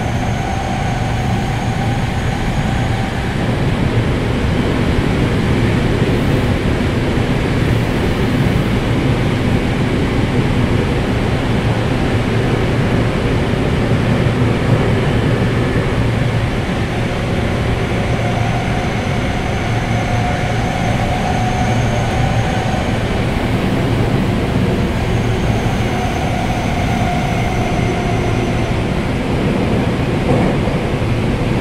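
Seibu 6000 series electric train with Hitachi GTO VVVF inverter drive, running between stations, heard from inside the car as a steady rumble of wheels and running gear. A faint tone comes in and out about three times.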